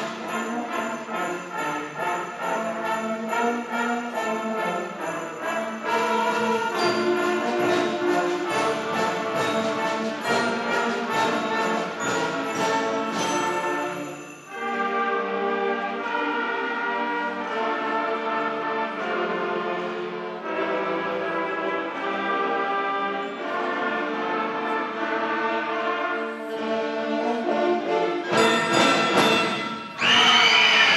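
Eighth-grade concert band playing: brass and woodwinds over percussion. The music dips briefly about halfway through and swells louder near the end.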